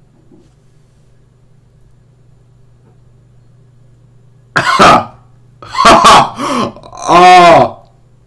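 A low steady hum, then about four and a half seconds in a voice breaks in with three short, loud outbursts, the last a single drawn-out exclamation.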